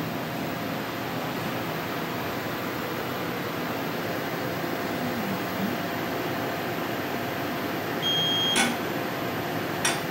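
Steady hum of surgical laser equipment and its cooling fans, with one short electronic beep about eight seconds in, followed by two sharp clicks.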